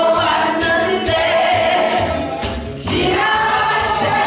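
A woman singing a Korean song into a microphone, with a group singing along, over an accompaniment track with a steady beat. The voices break off briefly about two and a half seconds in.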